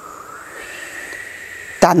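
A soft, steady hiss with a faint whistle slowly rising in pitch: storm wind being imitated for the storm at sea.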